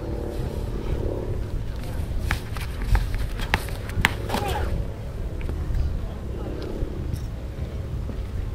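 Hammer throw in progress: a run of sharp clicks and scuffs in the middle as the thrower turns in the concrete circle. A steady low wind rumble on the microphone and faint distant voices run underneath.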